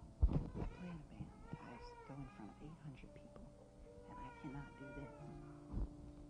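Two high, wavering meow-like cries, each lasting about a second, over soft sustained music. A sharp thump comes about a third of a second in and another near the end.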